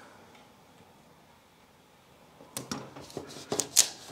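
Faint room tone for about two and a half seconds, then a quick series of short, sharp crackles and taps near the end as a sticker is peeled from its backing and pressed onto a metal cabinet door by hand.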